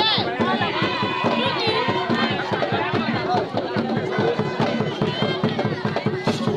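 Fast, steady drumming with many voices singing and shouting over it: traditional music for masked dancers at a village masquerade.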